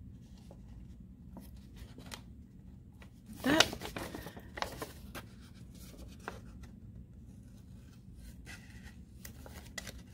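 Scissors snipping through a paper envelope: scattered small snips and paper clicks over a faint low hum. A brief voice sound with rising pitch comes about three and a half seconds in.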